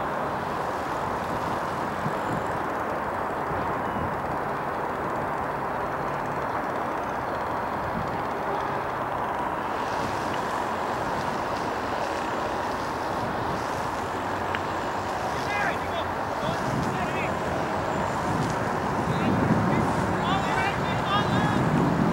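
Steady outdoor background noise with faint, distant voices calling out in the second half. It grows louder near the end.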